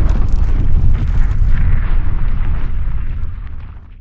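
Cinematic logo-intro sound effect: a loud, deep rumbling fiery boom that fades away near the end.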